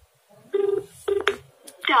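A 123PAY automated phone line answering over a smartphone's speakerphone: a short steady tone and a brief beep come through the phone's narrow telephone sound. Two faint clicks follow, then the recorded voice greeting begins near the end.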